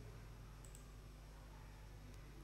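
Two faint, sharp clicks close together, a computer click opening a link, over near-silent room tone.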